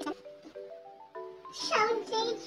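Background music with a run of steady notes climbing step by step in pitch, then near the end a loud high cry that slides down in pitch.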